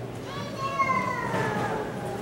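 A high-pitched voice in the audience calls out once, a long call that slides down in pitch, over a low crowd murmur in a large hall.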